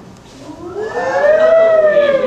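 A single siren-like wail that rises in pitch and then falls again, growing loud toward the end.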